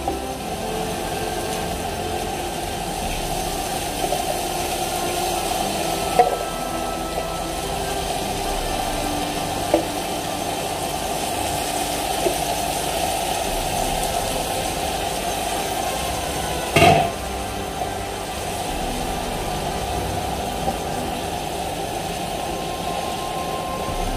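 A pan of chicken, onions and rice sizzling steadily on the stove. A few knocks against the metal pan, the loudest about 17 seconds in.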